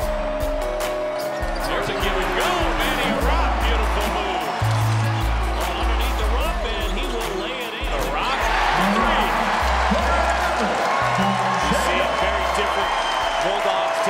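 Music with a heavy, blocky bass line under arena crowd cheering from the game footage. The cheering swells twice, a few seconds in and again about halfway through.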